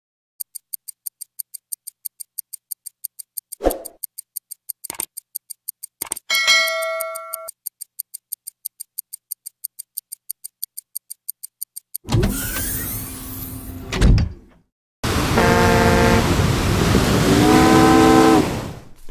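Intro sound effect of a clock ticking fast, about four ticks a second, with a chime about six seconds in. After twelve seconds it gives way to a noisy burst and a thud, then a steady hiss carrying a pitched, horn-like tone that rises near the end.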